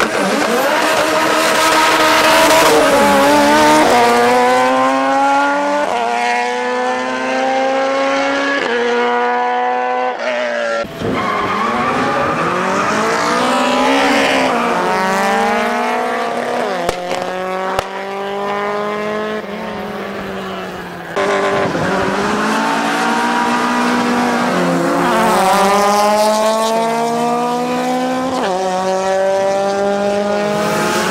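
Drag-racing car engines accelerating flat out through the gears: each run's pitch climbs steadily, then drops sharply at an upshift every two to three seconds. The sound breaks off twice as one run gives way to another.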